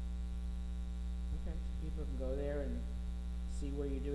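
Steady electrical mains hum, with a faint, quiet voice coming in about two seconds in and again near the end.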